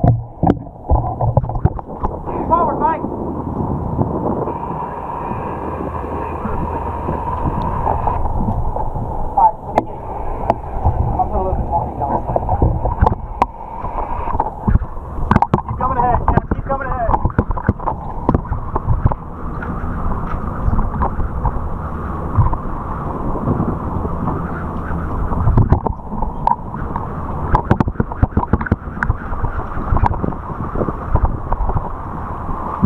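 Wind buffeting a camera microphone on a moving sportfishing boat, over the low hum of the boat's engines and rushing water, with indistinct crew voices now and then. About four seconds in, a thin steady high tone sounds for about four seconds.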